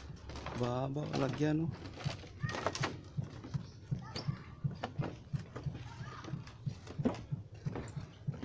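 Footsteps knocking on a slatted boardwalk as someone walks along it, about three steps a second. A man's voice sounds briefly about a second in.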